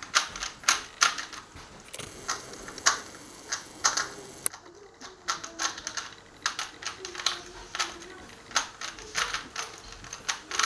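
A plastic Rubik's cube being turned quickly by hand, its layers snapping round in a fast, irregular run of clicks and clacks, several a second.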